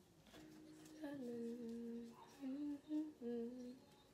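A woman humming a tune to herself, a faint note first and then four or five held notes that step up and down from about a second in.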